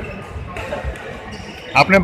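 The ambience of a large indoor badminton hall: a faint hubbub with a few faint knocks from play on the courts. A man starts talking near the end.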